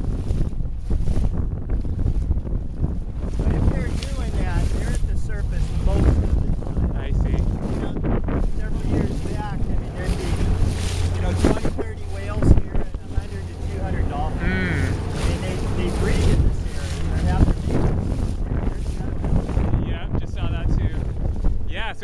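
Wind buffeting the microphone aboard a small boat under way, over a steady low drone, with one sharp thump about halfway through.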